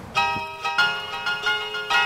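A short musical sting of bell-like chime notes, struck one after another a few times a second, each ringing on with bright overtones.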